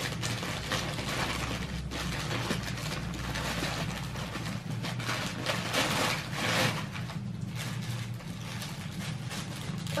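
Christmas wrapping paper being torn and crinkled as a present is unwrapped: a continuous run of ripping and rustling, loudest about six to seven seconds in, over a steady low hum.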